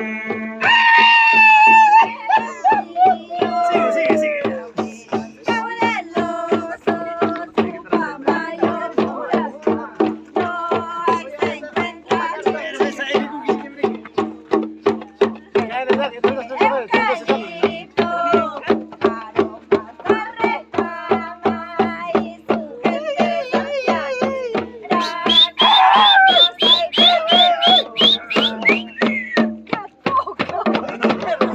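Andean Santiago festival music: women singing in high voices over a steady beat of small tinya hand drums, about three strokes a second, with a low tone held underneath. Near the end the voices rise to high held notes.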